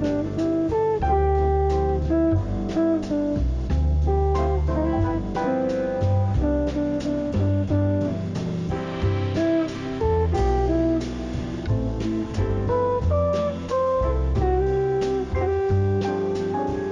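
Slow jazz music, a plucked guitar playing over a low bass line.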